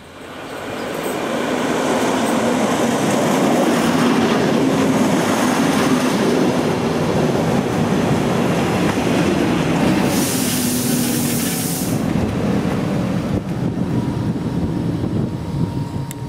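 Electric regional train running into a station and coming to a stop: its running and wheel noise builds over the first two seconds and then holds steady. About ten seconds in there is a sharp two-second hiss, and a steady tone comes in near the end.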